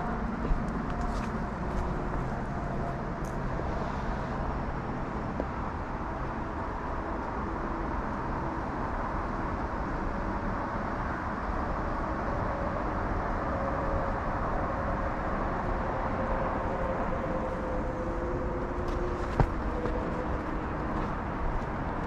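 Steady noise of distant road traffic, with faint drawn-out tones of passing vehicles slowly sliding in pitch. Two short sharp clicks stand out, one just after the start and one near the end.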